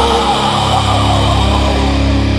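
Loud heavy rock music with distorted electric guitars, instrumental with no singing.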